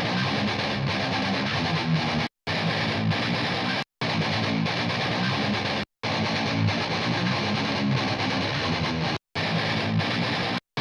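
Playback of a distorted electric guitar riff recorded through a miked guitar cabinet, with both sides taken from the mic position between the speaker's cap and its edge. The music is broken by four brief silent gaps.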